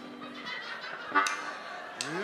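Low-level stage and room sound in a pause between songs at a live band concert. A held low note stops about a quarter of the way in, and one brief high sound comes just past a second in.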